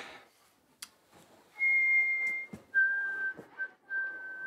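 A boy whistling steady held notes: one high note, then a lower note sounded again and again. A single short click comes just before the whistling begins.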